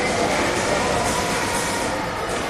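Gym cardio machine running, a steady mechanical rolling noise under the workout.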